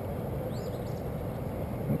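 Steady low outdoor rumble with a songbird's short chirp, a few quick rising-and-falling notes, about half a second in.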